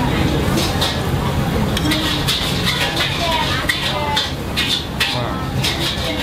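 Busy restaurant background with no close speech: other people's voices talking nearby over a steady low hum, with a few light clicks.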